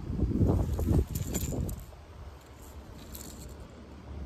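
Light metallic jingling and clicking from a red lipless crankbait's treble hooks and rattle as it is handled, mostly in the first two seconds over a low rumble, then quieter.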